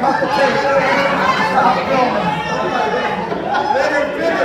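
Several people talking over one another in a group discussion: overlapping, indistinct chatter.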